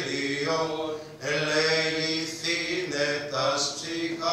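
A man chanting a Greek Orthodox wedding hymn in Greek, in long held notes, with a brief break for breath about a second in.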